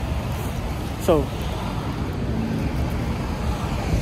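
Steady city street traffic noise, a low rumble of passing vehicles.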